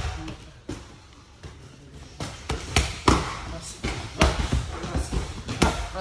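Gloved punches and kicks smacking red focus mitts, about a dozen sharp slaps: a few spaced strikes, then quicker combinations from about two seconds in.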